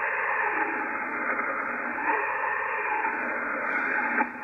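Yaesu FTdx5000MP receiver's band noise on lower sideband with no signal present: a steady hiss from the speaker that is cut off sharply at the top of the receive filter. The LSB carrier insertion point is set to +200 Hz, so the hiss sounds thin, with more high emphasis and less low end.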